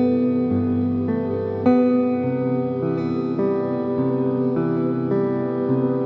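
Solo acoustic guitar playing ringing chords that change every second or so, with a firmer struck chord about a second and a half in.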